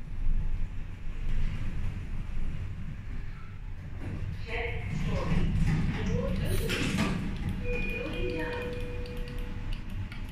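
Schindler lift car running with a low steady rumble for the first few seconds, then voices and a steady electronic beep near the end as the car's buttons are pressed.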